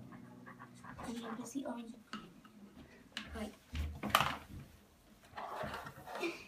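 Quiet handling of Play-Doh toys on a table: a few soft knocks and taps about three to four seconds in, with faint murmured voices and breathing.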